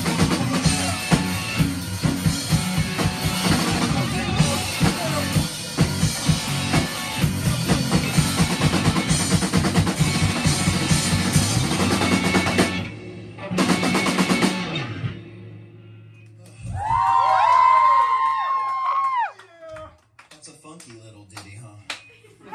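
Live rock band, drum kit and electric guitar, playing loudly with a steady beat, stopping sharply about thirteen seconds in with one last hit that rings out. A few seconds later comes a loud drawn-out wail about two seconds long whose pitch bends up and down.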